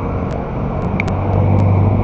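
Road traffic passing close by: a steady rumble of car engines and tyres, with a low engine hum growing louder about halfway through. Short ticks recur throughout.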